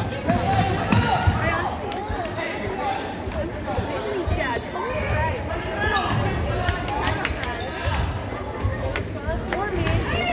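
Basketball dribbled on a hardwood gym court, a run of short bounces echoing in the hall, over voices from players and the sideline.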